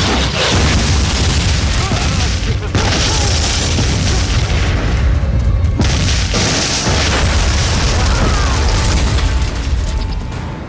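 Film battle sound effects: explosions booming one after another over a deep, continuous rumble, layered with dramatic music. The blast noise breaks off briefly twice, once near three seconds in and again a little past six.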